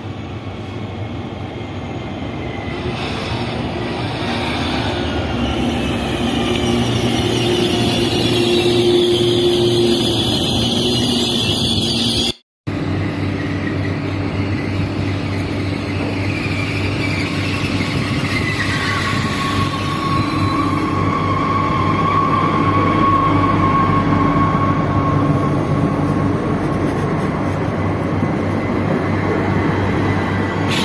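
Electric TER multiple units running into a station. First a Régiolis draws nearer, growing louder, its motor whine falling in pitch as it slows. After a sudden break, a double-deck Regio 2N runs in close by, with a steady high squeal from its wheels and brakes partway through.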